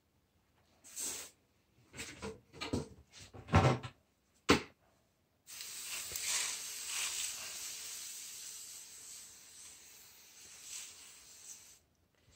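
Rustling handling noises with two sharp knocks. Then a steady hiss that slowly fades over about six seconds, as potting mix in an aluminium foil pan is wetted to pre-moisten it.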